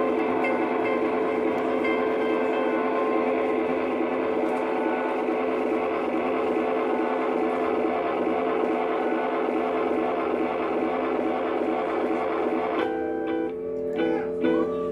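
Live rock band playing a steady, dense drone of sustained electric guitar tones. Near the end the wash drops away, leaving a few held tones and separate picked guitar notes.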